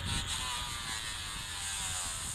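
Newell 338 conventional reel's spool spinning freely as braided line pays out during a surf cast: a steady high whir that slowly falls in pitch as the spool slows.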